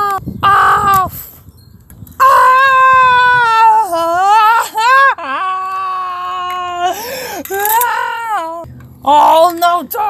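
A person's voice letting out long, drawn-out wailing cries of dismay, the pitch held and then swooping down and back up several times: a mock lament over a staged toy-car crash.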